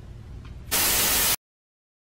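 Faint room tone, then a short, loud burst of static-like hiss that cuts off abruptly into dead silence about a second and a third in.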